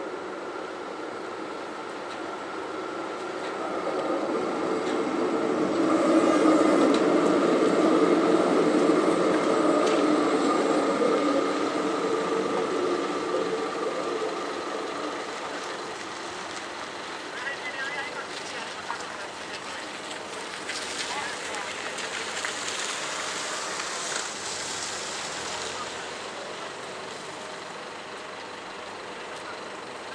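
A Helsinki tram running past close by on street track. Its rumble and steady whine build over several seconds, are loudest a few seconds in, then fade away, leaving quieter tram and street noise.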